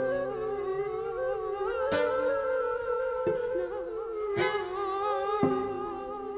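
Contemporary chamber music played live: flute and cello hold sustained, slightly wavering notes, cut across by four sharp attacks about a second apart.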